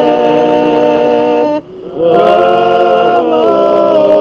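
A group of voices singing a West Indian Spiritual Baptist worship hymn in harmony, holding long, drawn-out notes. The singing breaks off briefly about a second and a half in, then the voices come back in together.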